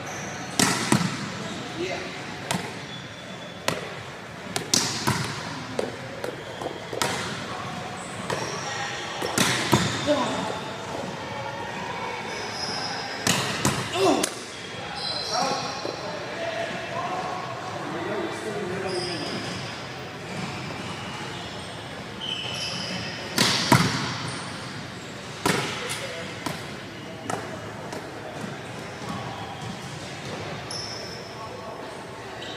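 Volleyballs being hit and bouncing on a gym floor, sharp smacks at irregular intervals with each one echoing around the large hall. Voices can be heard in the background.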